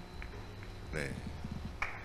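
Carom billiard balls clicking against one another, with faint clicks early and sharper, louder clicks near the end. The three-cushion shot has run too long and does not score.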